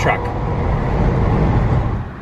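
Steady low rumble of road and engine noise inside a car driving at highway speed. There is no tire thumping, as the tires have just been fixed.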